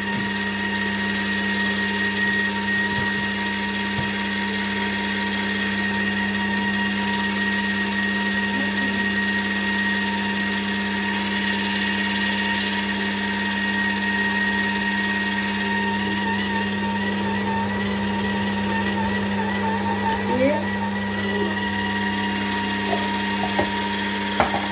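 Philips masticating slow juicer's motor running steadily with an even, low hum while it presses oranges.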